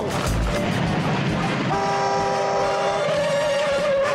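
A car horn held in one long steady blast starting a little before halfway in, over street and traffic noise, with film music underneath.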